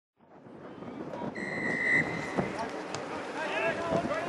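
Rugby match sound fading in: spectators' voices and wind on the microphone, a referee's whistle blown once for about half a second, then spectators shouting near the end.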